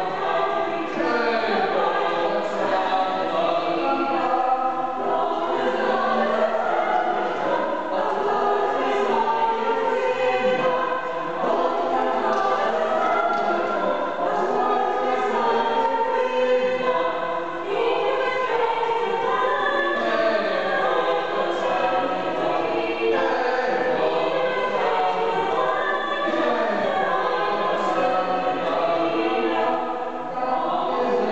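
A mixed a cappella ensemble of six voices, four women and two men, singing a country-dance madrigal in close harmony without accompaniment.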